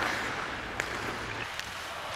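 Ice hockey arena ambience: a steady wash of crowd noise, with a couple of faint sharp clicks about one second in and again a little later.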